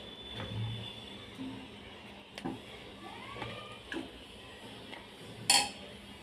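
A few light knocks and clicks as raw chicken drumsticks are set down in an empty nonstick kadai, the loudest about five and a half seconds in.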